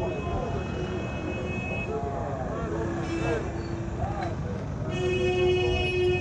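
Busy city street: passers-by talking over traffic noise, with a vehicle horn held in one long, steady blast from about five seconds in.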